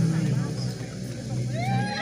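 Several people talking and calling out at once over a low steady hum.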